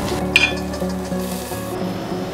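A red-hot iron ball sizzling as it is pressed into the wet flesh of a watermelon, with a sharp hiss about half a second in, under steady electronic background music.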